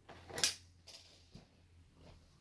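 A Spyderco P'Kal folding knife drawn fast from a trouser pocket: one short swish of cloth and pocket clip about half a second in, then a few faint clicks.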